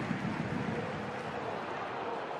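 Stadium crowd noise: a steady murmur of spectators at a football match.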